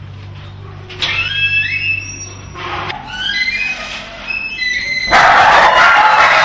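A dog yipping and whining in a run of short cries that rise in pitch. About five seconds in, a loud noisy sound starts suddenly.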